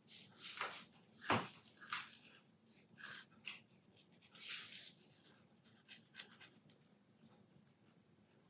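Fine pen scratching on paper in short, irregular strokes while dots and small shapes are drawn, with a sharper tap of the pen on the paper a little over a second in.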